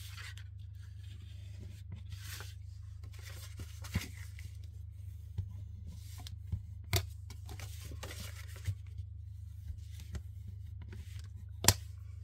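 Folded cardstock being rubbed along its creases with a bone folder: soft swishing and rubbing of paper, with a few short taps as the card bases are handled and laid down, the sharpest near the end.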